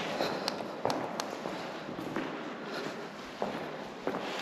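Footsteps on a hard floor, irregular scuffs with a few sharper taps.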